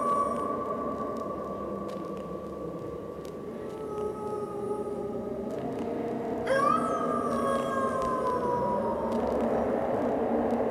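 Wolf howling twice over a low steady drone. The first howl is already under way and holds its pitch, fading out over the first few seconds. The second rises sharply about six and a half seconds in, then slides slowly down for a couple of seconds.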